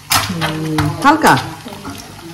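Eggs frying in a pan while a metal spoon scrapes and clinks inside a glass jar of salt as salt is scooped out to season them. The spoon strikes sharply just after the start and again about a second in, with a falling scrape.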